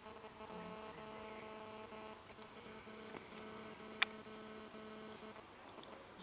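A faint, steady buzzing hum holding one pitch throughout, with a single sharp click about four seconds in.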